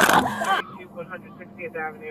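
Loud scuffling and a raised voice close to the microphone as a suspect is being handcuffed, cutting off abruptly about half a second in. After that, only faint voices.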